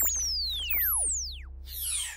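Electronic outro music: synthesizer sweeps gliding down and up in pitch over a steady low drone, with a swoosh falling in pitch near the end as the sound fades.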